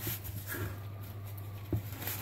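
Puff pastry and its baking paper being unrolled and smoothed flat by hand: soft, faint paper rustling over a steady low hum, with one light knock on the wooden board about three-quarters of the way through.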